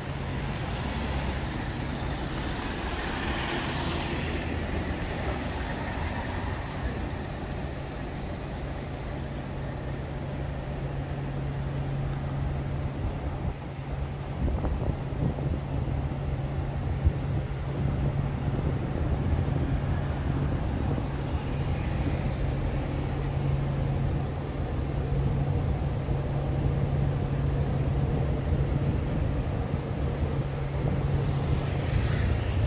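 Steady city road traffic, with cars, taxis and buses driving along a multi-lane street under a constant low engine hum. One vehicle passes close in the first few seconds, and the traffic grows louder from about halfway through.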